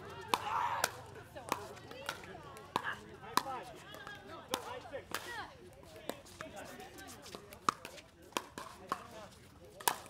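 Pickleball paddles hitting a plastic ball in a fast rally. Each hit is a sharp pock, coming roughly every half second to a second, with faint voices in the background.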